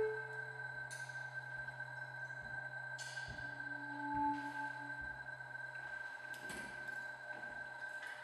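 Electronic sound installation: a steady high tone held over a low drone, with a soft lower tone swelling about three and a half seconds in and a brief higher ping just after, and faint clicks and hiss scattered through.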